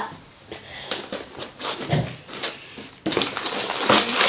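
Cardboard toy box being opened by hand: a few light taps and rustles, then from about three seconds in a loud, continuous scrape as the end flap is pulled open.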